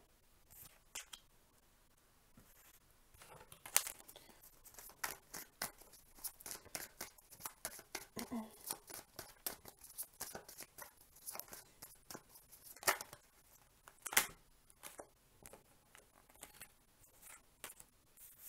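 A Linestrider Tarot deck being shuffled by hand, starting about three seconds in: a quick run of soft card snaps and flicks, with a few louder snaps among them.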